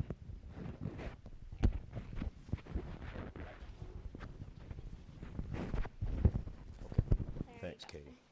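Irregular knocks, thumps and rubbing of a clip-on lapel microphone being handled and fastened to a speaker's clothing, with a few sharp bumps, and brief quiet talk near the end.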